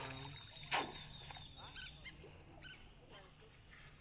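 A dripping cast net being handled over the water, with one sharp, short sound about a second in. Faint short high chirps are heard later.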